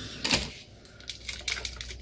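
Small packaged products and their plastic and cardboard packaging being handled and set down: a quick, irregular series of sharp clicks and rattles.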